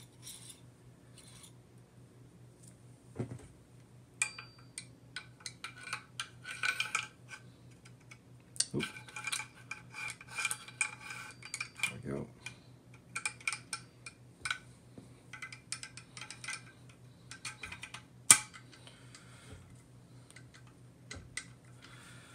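Steel parts of a SIG SG 553 rifle clicking, clinking and scraping against each other as it is put back together by hand, some clinks ringing briefly. One sharp click about three-quarters of the way through is the loudest.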